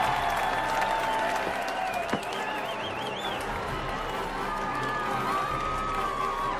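Crowd of spectators cheering and clapping, with music playing underneath.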